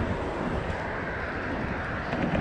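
Steady road-traffic noise: cars driving past on the street, a continuous wash of tyre and engine sound.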